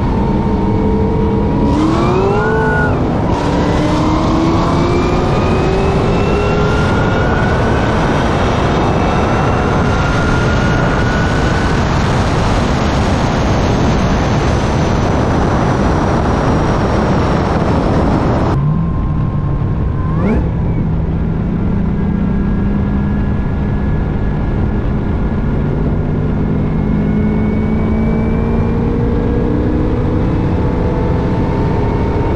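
Corvette C6 ZR1's supercharged V8 at full throttle from a roll near 60 mph, its pitch climbing through the gears under heavy wind rush as it runs up past 130 mph. About 18 seconds in the sound cuts off abruptly to a steady, quieter engine cruising at around 55 mph, with one short rev.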